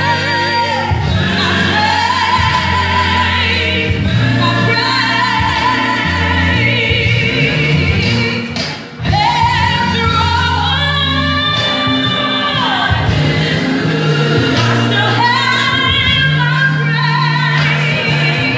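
A woman singing with vibrato over instrumental accompaniment with steady, sustained bass notes, in a gospel style. The music drops briefly about halfway through, then comes back.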